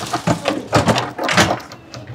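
A series of short knocks and rustles from someone crouching and moving about under a counter.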